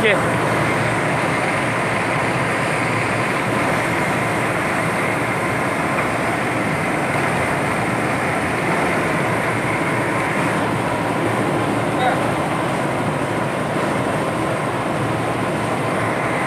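Diesel-fired blower burner heating a bitumen tank, running steadily: a constant rushing noise of the fan and flame, with a faint steady whine.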